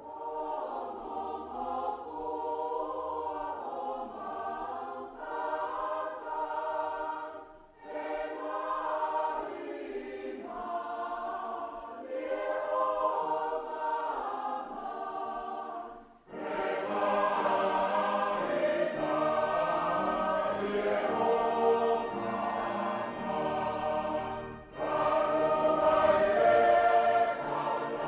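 A mixed choir singing a hymn in phrases, with brief breaks between lines; it grows fuller and louder about halfway through.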